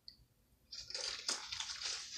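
Water splashing and trickling in a plastic cup, starting just under a second in.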